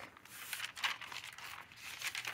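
Faint rustling of paper being handled, in a few short scratchy strokes.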